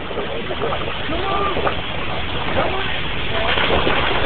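Faint, distant voices of people calling out in the water over a steady rushing background noise.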